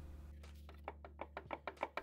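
Faint run of light clicks and taps, about a dozen in a second and a half and coming closer together toward the end, over a low steady hum.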